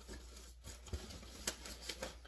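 Faint handling noise: rustling with a soft knock just under a second in and a sharp click about a second and a half in, as items are moved about and picked up.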